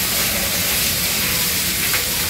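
Onions frying in hot oil in a pan, a steady sizzle as they are stirred with a spatula.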